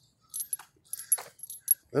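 Small metal pieces jingling in a few short clusters of light clinks.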